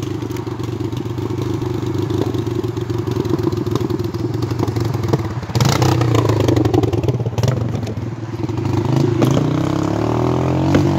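ATV engine running under way, revving up about halfway through, easing off briefly and picking up again near the end, with clattering over it.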